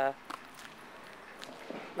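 Faint footsteps on a paved path: a few soft, irregular steps over a low, steady outdoor background.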